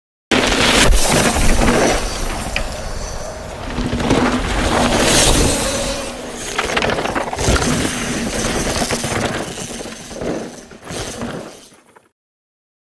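Sound effects for an animated logo intro: a dense run of heavy hits and noisy crashing, shattering textures that starts suddenly, surges and eases several times, and dies away just before the end.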